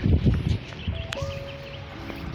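Low thumps and rumble in the first half second, then quieter, with faint sustained musical notes and a single sharp click a little past a second in.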